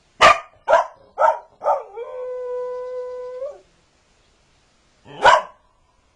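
A border collie barks four times in quick succession, then howls on one steady note for about a second and a half, and barks once more near the end.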